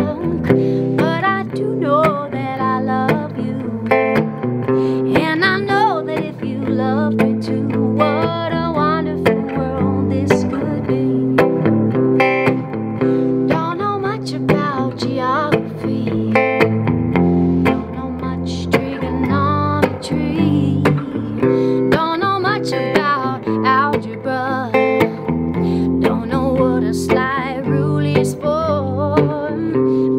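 A 1956 Silvertone U2 electric guitar played through an amp with its pickup selector in the middle position, a funky song picked and strummed without a break. A woman's voice sings along over the guitar.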